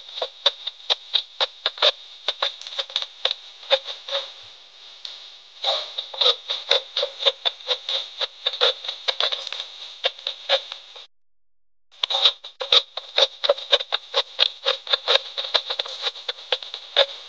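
Close-miked chewing of crisp stir-fried celery and meat: a quick, uneven run of crunches, a few a second, breaking off for about a second near the end of the first two-thirds before starting again.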